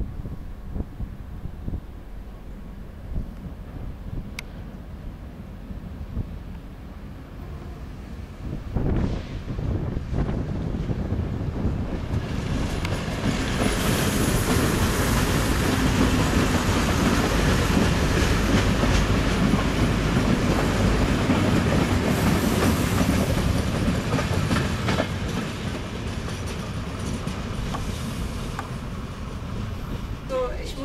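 Railbus train of class 798 Schienenbus units running past on the track. The sound is a low rumble at first, grows much louder from about nine seconds in, is loudest in the middle, then eases off somewhat toward the end.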